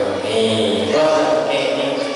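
A man's voice chanting a religious recitation into a microphone, holding long, melodic notes.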